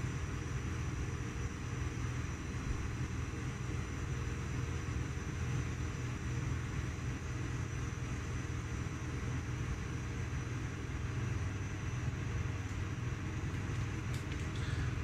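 Steady low mechanical hum with a faint high whine, unchanging throughout, typical of air conditioning or other room machinery running.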